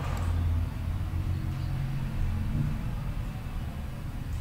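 A low, steady background rumble, with no speech over it.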